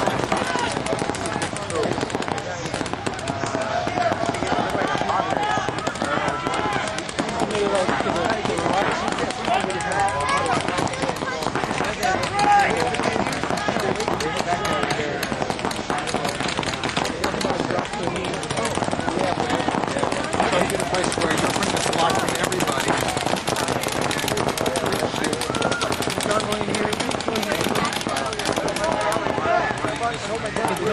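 Pump paintball markers firing in many quick, scattered shots through the whole stretch of play, with voices calling out over the shooting.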